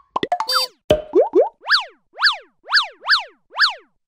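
Cartoon-style logo sound effects: a few quick pops and rising boings, then five short chirps that each sweep up and back down in pitch, about two a second.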